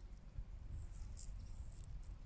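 Faint outdoor garden ambience: a low rumble of wind on the microphone, with short high-pitched insect chirps coming in bursts from about a second in.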